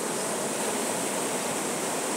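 Steady, even wash of sea surf on a rocky shore, with no single wave breaking out of it.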